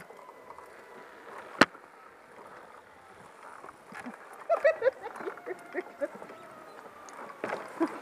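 Movement noise while walking a wooden suspension bridge on a safety lanyard. A sharp click comes about one and a half seconds in, and faint voices about halfway through.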